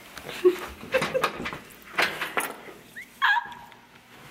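A woman laughing quietly in short bursts, with a few sharp clicks in between and a brief high squeak about three seconds in.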